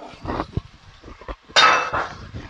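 Minced garlic tipped from a small glass jar into a pot of frying sofrito: a few faint knocks, then a short bright clink near the end as the jar meets the pot.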